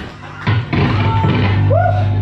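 Live punk rock band playing: drums, bass and guitar. The band drops out briefly at the start and crashes back in about half a second later, with a short upward-bending note near the end.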